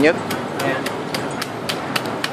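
A steady series of sharp taps or clicks, about three to four a second, over busy room noise.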